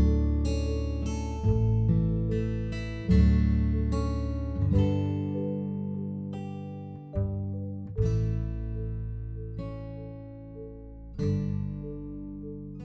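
Background music: an acoustic guitar playing chords that are struck about every second or two and ring out and fade between strikes.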